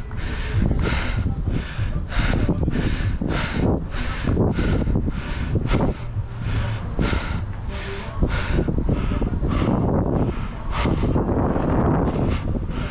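Running footsteps on artificial turf, about two to three a second, with wind rumbling on the microphone of a body-worn camera.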